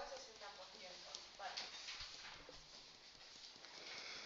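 Faint taps and strokes of a marker writing on a whiteboard, a few short knocks spread over the middle seconds.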